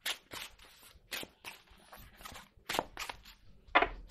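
A deck of tarot cards being shuffled by hand: an irregular run of soft card snaps and slides, the loudest just before the end.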